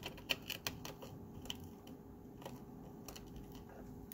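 Faint, irregular light clicks and taps from small tools and the plastic tray being handled while crushed opal and ashes are packed into a stainless steel ring's inlay channel. The clicks come thickest in the first half and then thin out.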